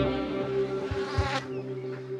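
Electronic dance music: a held synth drone under a buzzy synth note that fades away about a second and a half in, while the deep bass thins out to a few faint thumps.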